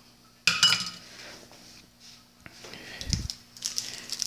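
Kitchen items handled on a granite countertop: a sharp clink with a brief ring about half a second in, then a few light knocks and a dull thump. Near the end comes a crinkling rustle as a paper sweetener packet is picked up.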